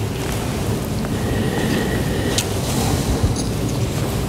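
Steady low rumble and hiss of room background noise, with a few faint clicks and rustles.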